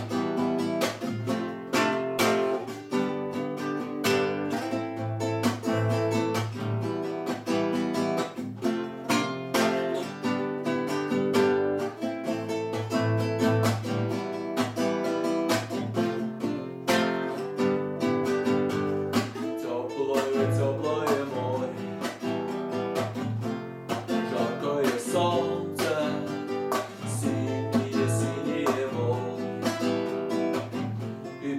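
Nylon-string classical guitar played in a steady strummed rhythm. About two-thirds of the way in, a man's voice comes in singing over it.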